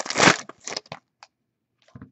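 A plastic trading-card pack wrapper crinkling and tearing, loudest in the first half second, followed by a few faint clicks and rustles of cards being handled.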